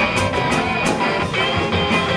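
Live rock band playing: electric guitar and acoustic guitar over a drum kit, with steady drum and cymbal hits.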